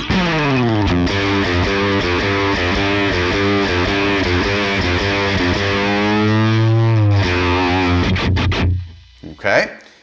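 Heavily distorted electric guitar played through a Line 6 Helix amp model, with a compressor just added at the end of the chain. The riff opens with a slide down the neck, holds a long note that bends down near the end, and stops about nine seconds in.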